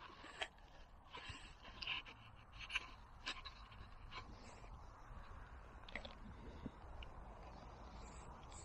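Camera handling noise: fabric rubbing and scraping over the microphone, with a few faint clicks, over a low rumble.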